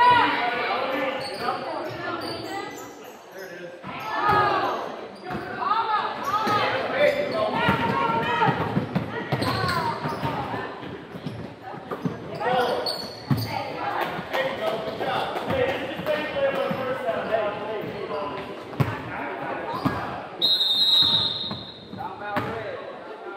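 Basketball game sounds in an echoing gym: a ball bouncing on the hardwood court, sneakers squeaking and players and spectators calling out. Near the end a referee's whistle blows briefly.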